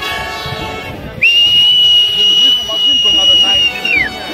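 A whistle blown in one long, loud, steady high-pitched blast of nearly three seconds, starting about a second in and sagging in pitch as it stops. Brass-band music plays at the start.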